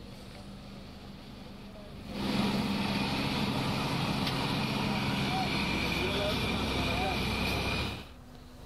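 Wooden fishing trawler's engine running with water rushing past its hull, quieter at first, then much louder from about two seconds in as the boat comes close. It cuts off suddenly at the end.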